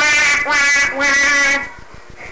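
A person's voice making drawn-out, nasal cries, about three in a row, ending about one and a half seconds in.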